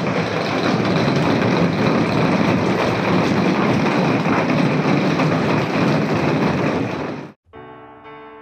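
Heavy rain pouring down and falling on a translucent corrugated plastic roof overhead, a loud, dense, steady hiss. It cuts off suddenly near the end, and soft piano music begins.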